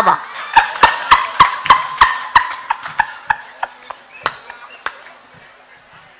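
A man laughing hard into a stage microphone, a high-pitched run of regular pulses, about three a second, that slows and fades out by about five seconds in.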